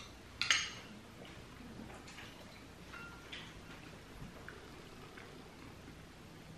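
Metal spoons clinking against small glass dessert bowls: one sharp clink about half a second in, then a few faint scattered clinks.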